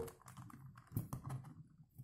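Plastic 3x3 Rubik's cube being turned by hand: a handful of faint clicks and clacks as its layers rotate, the loudest about a second in.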